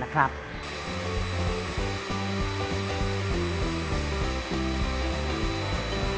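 Electric hand mixer running steadily, its twin beaters whipping eggs and sugar in a glass bowl until they rise pale and fluffy. Background music plays underneath.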